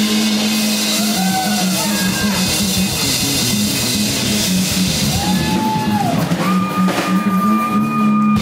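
Live rock band playing: drum kit, electric guitars and bass, with a lead melody that slides between long held notes and ends on a long held high note.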